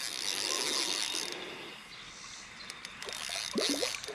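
Spinning fishing reel being cranked as a hooked bass is reeled in, the reel's mechanism whirring and clicking. Near the end the fish splashes at the surface.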